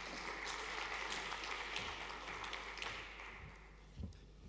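Audience applauding, a dense patter of many hands clapping that dies away about three seconds in.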